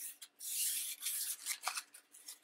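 Paper napkin rubbed in short strokes over a printed paper page, wiping excess soft pastel off the border; the longest stroke comes about half a second in, followed by a few shorter ones.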